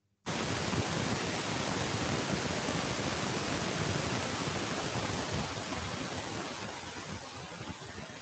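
Steady hiss of background noise from a participant's open microphone on a video call. It starts suddenly just after a click and eases slightly toward the end.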